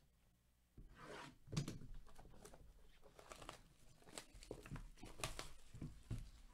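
Plastic shrink wrap on a cardboard card box crinkling and tearing under gloved hands, in a run of short rustles that starts about a second in.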